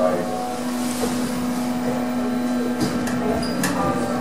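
Lift car travelling in its shaft, heard from on top of the car: a steady hum with rushing noise, and a few sharp clicks about three seconds in.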